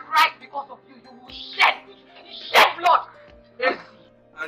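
A woman shouting in short outbursts over background music with a steady held drone.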